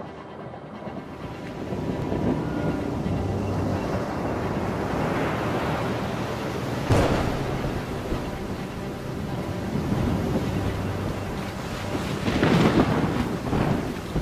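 Storm sound effects of heavy surf and wind, building up after the start, with a sharp crash about seven seconds in and another loud surge near the end.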